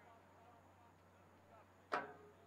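Faint, distant shouts of players on a soccer field, then a single sharp, loud knock near the end that dies away quickly.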